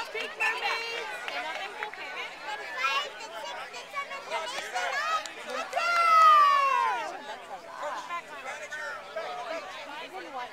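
Several people chattering and calling out at once on a playing field, mostly high-pitched voices, with one louder drawn-out call about six seconds in.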